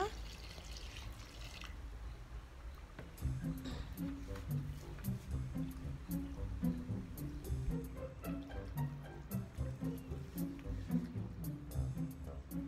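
Water poured from a plastic bucket into a tub of dry cement, lasting about the first second and a half. From about three seconds in, background music with repeating low notes and a regular beat.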